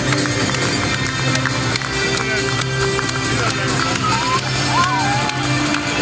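Music played through an ice hockey arena's PA system with held notes, over the general noise of a large crowd.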